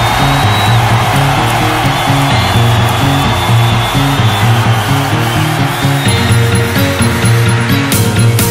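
Electronic house music with no vocals: a repeating synth bass line under a sustained noisy synth wash.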